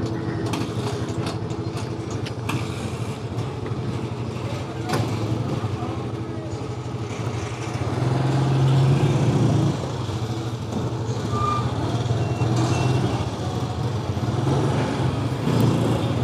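Small Kawasaki motorcycle engine running steadily while riding at low speed, heard from the rider's seat. The engine gets louder for a couple of seconds about halfway through as the throttle opens.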